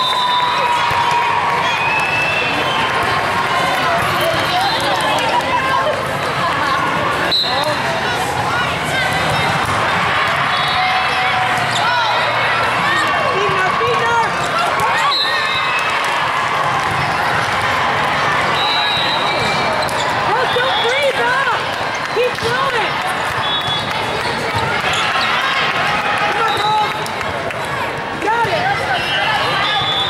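Busy sports-hall ambience of an indoor volleyball tournament: many overlapping voices and shouts from players and spectators, sneakers squeaking on the court, and sharp ball hits, two of them standing out about seven and fifteen seconds in. Short high referee whistles sound several times from the surrounding courts.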